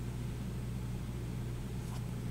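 Steady low hum with faint hiss: background room noise, with no other sound.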